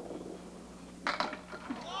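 Candlepin ball landing on the lane and rolling, then crashing into the pins about a second in, with pins clattering after. The hit is a near-strike: the 10 pin rocks but stands.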